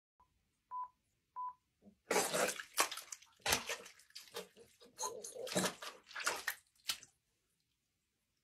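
Foley vomit effect: a liquid-soaked sponge and wet material squeezed and squelched by hand over a microphone, giving a series of irregular wet splattering gushes from about two seconds in until about seven seconds. It is preceded by three short, high beeps.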